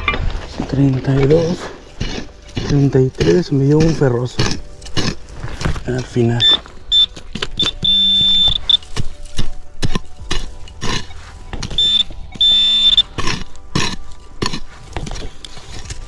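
Metal detector sounding wavering target tones as the coil sweeps over a buried signal. Then a pick chops into hard, dry dirt in a run of sharp strikes, while a pinpointer gives high-pitched beeps, in short bursts and in a couple of longer steady stretches, as it homes in on the target.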